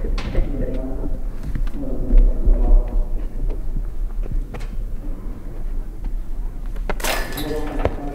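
Voices talking in a large indoor training hall, with low dull thuds about two seconds in and a short, loud burst of noise about seven seconds in as a medicine ball is thrown.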